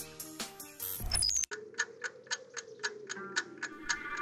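Background music that stops abruptly about a second and a half in, then a fast, even clock-like ticking, about six ticks a second, over a faint low drone.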